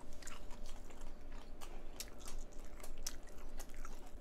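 A person chewing a mouthful of rice wrapped in a butterbur leaf: a run of short, irregular mouth clicks.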